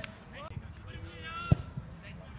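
A single loud thud of a football being kicked, about one and a half seconds in, with players' voices calling across the pitch.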